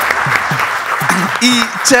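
Audience applauding, the clapping fading about a second in as a man's voice takes over.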